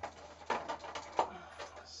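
Hands handling small model-car parts on a table: faint rustle with two sharp taps, about half a second and just over a second in, as the wheel for the axle is picked up.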